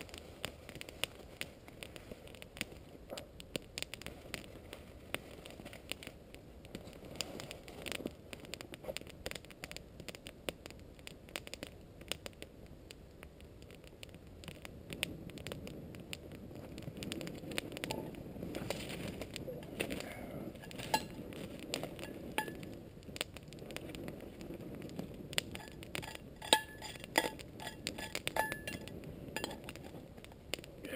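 Wood campfire crackling with frequent small pops. From about halfway there is heavier rustling and handling noise, and near the end a metal pot clinks several times as it is handled.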